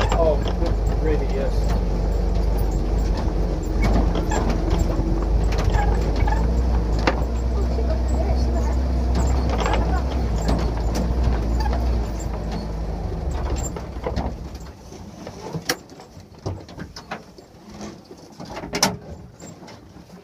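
Toyota FJ40 Land Cruiser's inline-six engine running steadily, heard from inside the cab as it crawls an off-road trail. The engine sound fades out about two thirds of the way through, leaving scattered knocks and clunks, with one sharper bang near the end.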